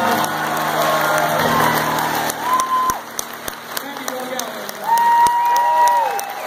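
Audience applauding and cheering at the end of a song, with two high calls from the crowd, a short one about halfway through and a longer one near the end. The keyboard's last held chord dies away in the first two seconds.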